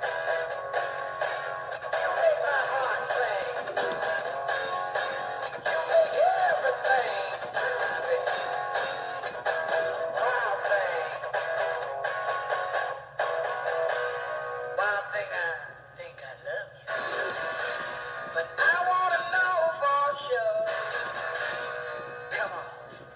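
Animated singing-fish plaque toy, a Big Mouth Billy Bass–style rainbow trout, playing a song with singing through its built-in speaker. The song has short drops in loudness around two-thirds of the way through.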